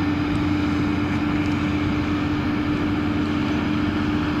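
John Deere 7530 tractor's diesel engine running steadily under load while pulling a Steeno cultivator, with one steady droning tone over a continuous rumble.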